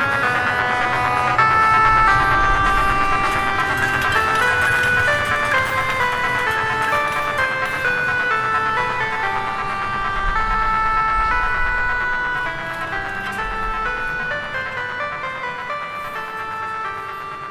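Dungeon synth music played on hardware synthesizers: a melody of short stepping notes over a low bass, growing quieter over the last few seconds.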